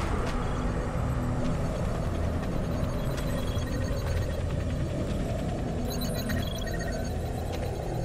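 A steady low rumble, with faint ticks and high tones scattered above it.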